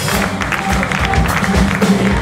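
Live blues-funk band vamping: drum kit keeping a steady beat over a sustained bass and keyboard groove, with some audience applause.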